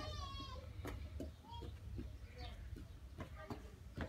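A toddler's short, high-pitched squeal in the first half-second, then a few faint, brief voice sounds over a low, steady background rumble.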